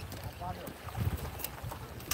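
Wind rumbling on the microphone over small waves washing against the jetty rocks.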